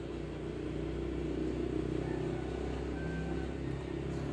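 Low, steady hum of an engine running, with a slight rise in level about half a second in.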